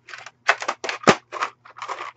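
Metal colored-pencil tin being handled, the pencils inside rattling and clicking in a run of short, irregular bursts, with one sharper click about a second in.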